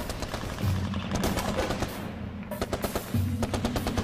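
Rapid bursts of gunfire, one burst about a second in and another from about two and a half seconds, over low, sustained background music.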